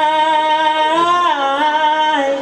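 A singer's voice holding one long sustained sung note, its pitch dipping briefly and coming back up about one and a half seconds in.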